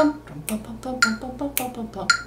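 A woman vocalizing short pitched syllables in a steady rhythm, with sharp finger snaps marking the beat about every half second, keeping the pulse of the passage.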